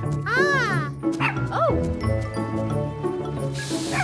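Cartoon puppy yipping twice, each yip rising and falling in pitch, over cheerful background music.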